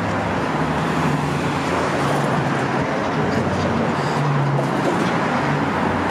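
Steady traffic noise from cars passing on a busy city street, with a low engine hum coming and going.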